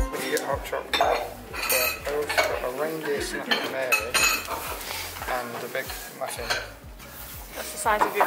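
Café clatter: dishes and cutlery clinking, with a couple of sharper clinks, over indistinct voices in the background.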